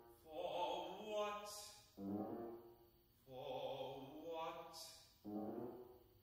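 Operatic tenor singing with piano accompaniment: two long sung notes, each followed by a piano chord that strikes and fades.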